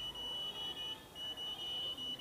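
Satellite finder meter's signal tone: a steady high-pitched beep, broken by two brief gaps, sounding while the dish is locked onto the satellite at around 66 to 70 percent signal.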